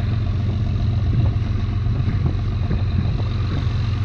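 Boat engine running steadily under way: a low, even drone with a faint steady high whine over it.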